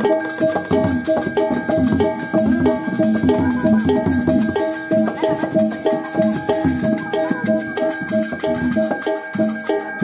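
Balinese gamelan music: bronze metallophones ringing a fast repeating pattern over drums and many quick percussive strikes, with no break.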